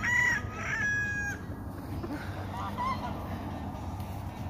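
A gamefowl rooster crowing: one call that holds a steady note and cuts off about a second and a half in. A fainter, shorter call from another bird follows about three seconds in.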